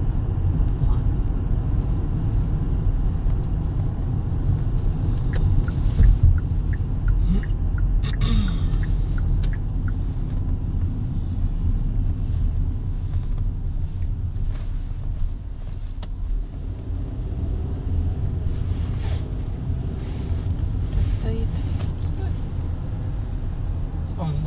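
Road noise inside a moving car's cabin: a steady low rumble of engine and tyres, with one brief louder bump about six seconds in.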